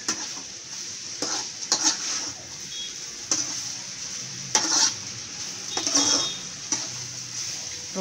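Grated carrot and prawn stir-fry sizzling in a metal pot while a spatula stirs and scrapes through it, a scraping stroke every second or so over a steady sizzle.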